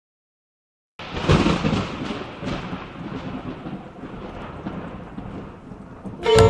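Thunder: silence, then a sudden clap about a second in that rolls on as a rumble and slowly fades.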